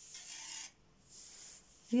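A knitted garment panel rubbed and slid across a table by hand: two brief rustles, the second about a second in.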